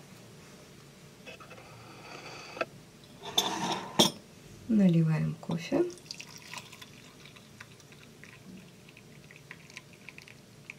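Glass coffee carafe handled with a sharp clink about four seconds in, then coffee poured from the carafe into a ceramic mug holding a metal spoon, a quiet trickle through the second half.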